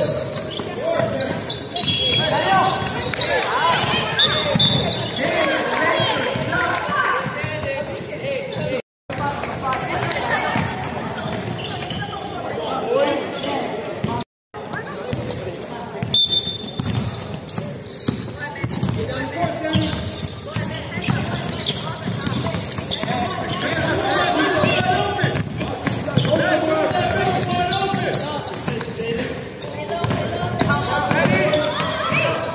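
Indoor basketball game in a gym: a basketball bouncing on the wooden court, with players' voices, shouts and short high squeaks throughout. The sound drops out completely twice, briefly, about a third and half of the way through.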